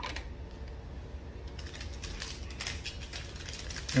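Panini Prizm basketball cards being handled and shuffled through by hand: a scatter of light clicks and soft slides of stiff card stock, busiest in the middle.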